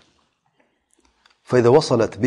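A pause with near silence and a few faint clicks, then a man's voice starts speaking again about a second and a half in.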